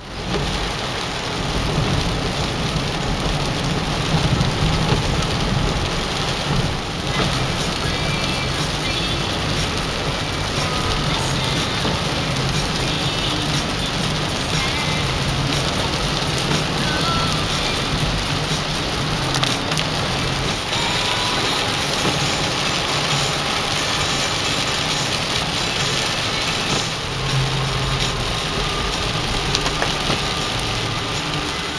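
Heavy rain and tyres on a wet road, heard from inside a moving car: a steady, dense hiss over a low rumble that starts abruptly.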